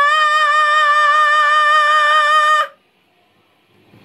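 Unaccompanied solo voice holding one long, high sung vowel with a slight wobble, on a passage the singer finds very hard to voice when tired. The note cuts off sharply about two and a half seconds in, followed by near silence and then faint room noise near the end.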